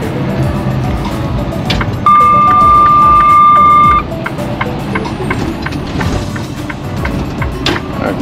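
Music playing in a semi-truck cab over engine and road noise. About two seconds in, a loud, steady, high electronic beep sounds for about two seconds and then cuts off.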